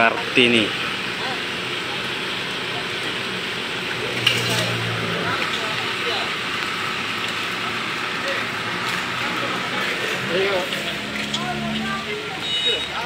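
Backhoe loader's diesel engine running steadily, with a sharp click about four seconds in.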